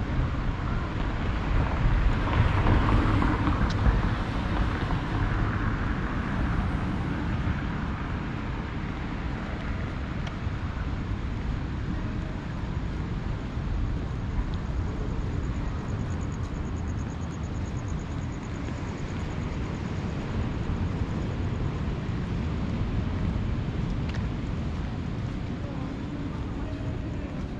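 Wind noise on the microphone over outdoor promenade ambience, louder for a few seconds near the start.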